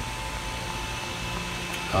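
Steady background hum and hiss of a workshop with a faint, thin high tone running through it, and no distinct events.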